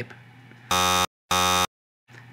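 Two short, identical electronic buzzes about half a second apart: a "wrong answer" buzzer sound effect marking a mistake.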